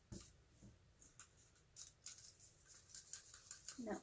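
Faint, scattered clicks and scrapes of a wooden craft stick stirring thinned acrylic paint in a small plastic cup, with the sharpest click just after the start.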